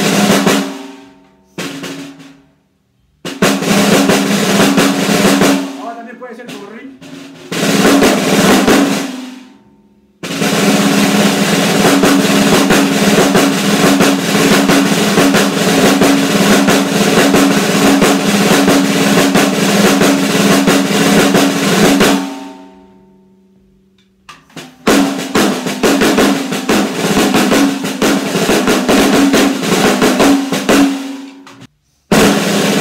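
Snare drum played with sticks: a few sharp strokes, then rolls, the longest lasting about twelve seconds and fading out, a short pause, then another roll near the end.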